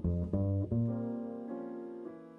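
Upright double bass played pizzicato in a jazz ballad: a few plucked notes in quick succession, the last one held, with chords from the band sounding with it.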